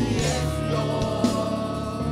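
A gospel praise team sings together into microphones over amplified accompaniment, with a steady beat about twice a second.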